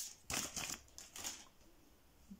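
Packaging crinkling as it is handled, in a few short bursts in the first half, then quieter.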